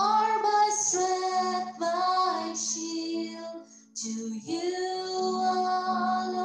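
A woman singing a slow worship song solo into a microphone, holding long notes with vibrato, with a short breath pause about four seconds in.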